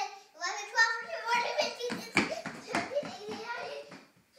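A young child's high voice vocalizing without clear words, with several thumps in the second half.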